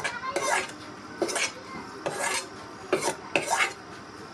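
Metal spatula scraping and clinking against a steel bowl and a metal karahi (wok) in about six short strokes, as cooked vegetables are scraped out of the bowl.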